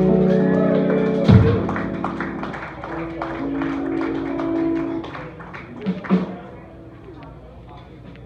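A live band ending a song: held guitar notes and a loud final hit about a second in, then notes ringing out and fading, with the audience clapping throughout.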